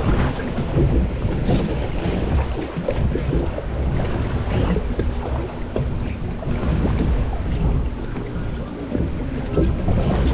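Water running along a Reverchon log flume trough around the floating log boat, with wind rumbling on the microphone.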